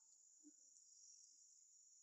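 Near silence, with faint, steady, high-pitched insect chirring.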